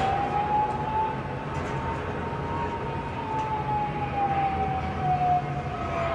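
A single long wailing tone that rises at the start, holds, then slowly falls in pitch, like a siren.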